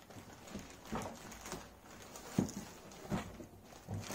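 Separate light knocks as cooktop parts in plastic wrapping are handled and set down on the cooktop, about four knocks a second or so apart.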